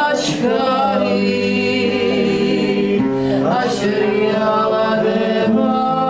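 A choir singing: several voices holding long, wavering notes together, changing chord every few seconds.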